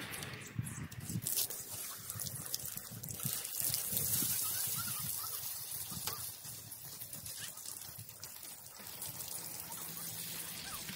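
Muddy water from wet classifying is poured out of a plastic bucket into a sluice box: a trickling pour that grows louder about three seconds in, then slowly tapers off.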